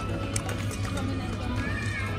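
Busy restaurant ambience: background music with a steady bass under indistinct talk, with scattered short clicks.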